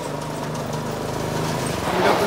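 A go-kart's small engine running as the kart drives toward the listener, growing steadily louder as it approaches.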